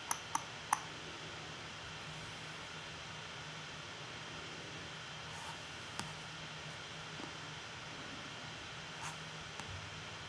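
Computer mouse clicking: three quick clicks in the first second and another about six seconds in, over a faint steady room hiss and hum.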